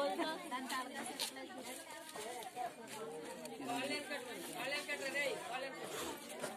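Indistinct chatter of several people talking at once in the background.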